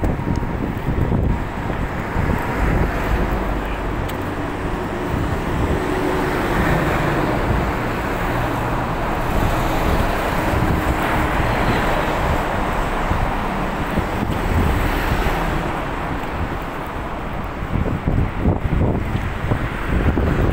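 Road traffic noise, swelling in the middle as a truck goes by, mixed with wind rumbling on the microphone.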